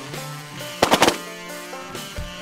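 A rapid volley of shotgun shots, several blasts close together about a second in, fired at decoying Canada geese. Background music runs underneath.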